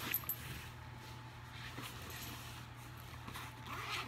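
Faint rustling of a quilted fabric diaper bag being handled and turned, with a couple of light clicks right at the start, over a steady low hum.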